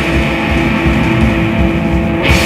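A live rock band playing loudly on electric guitars, bass guitar and a drum kit.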